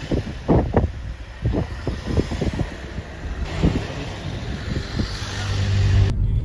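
Car interior noise while driving: a steady low road-and-engine rumble, broken by a run of short, irregular low thuds.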